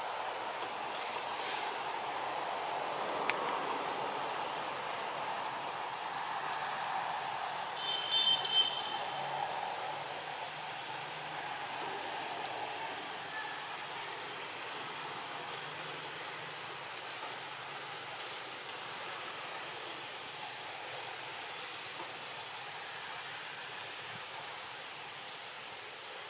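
Steady outdoor background noise, a constant hiss-like rumble with faint high steady tones, broken about eight seconds in by a short high-pitched chirp.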